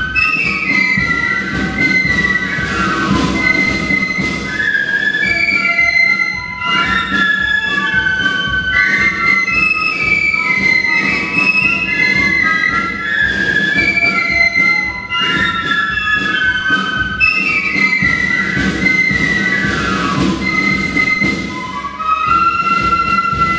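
Flute band playing a melody, many flutes sounding together in parts with a continuous moving tune.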